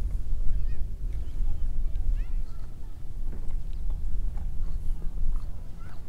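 Wind rumbling on the microphone, rising and falling in gusts, with a few short, high chirping bird-like calls over it.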